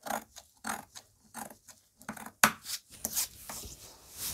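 Large tailor's shears cutting through fabric along a curved line: a series of short, crisp snips about every two-thirds of a second, the sharpest a little past halfway.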